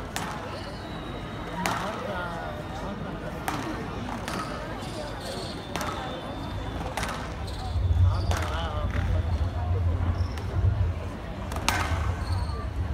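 Squash rally: the ball cracks off rackets and the court walls in about nine sharp strikes at irregular intervals of one to two seconds, with shoes squeaking on the court floor between shots.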